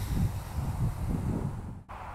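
Low, uneven rumble of wind on the microphone, with a brief dropout near the end.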